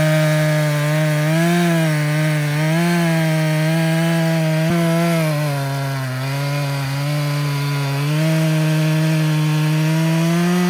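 Echo CS-620PW two-stroke chainsaw with a 27-inch bar cutting through a white oak log, the engine held on the throttle as the chain works in the cut. Its pitch wavers as the load changes, sagging a little for a couple of seconds past the middle before picking back up.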